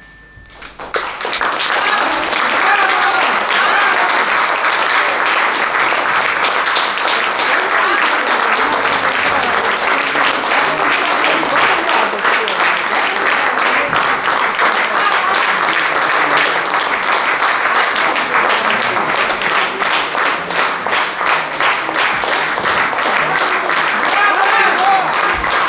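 Audience applauding after a piano piece. It starts about a second in, once the last piano notes have faded, and then holds steady.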